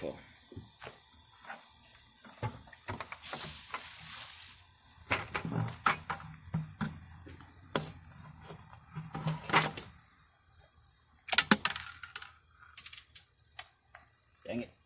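Scattered clicks and knocks of handling, loudest as a quick cluster of clatters about eleven seconds in, with brief low mumbled voice in between.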